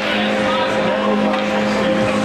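Ice rink's horn sounding one long steady tone over crowd noise, marking the end of the third period.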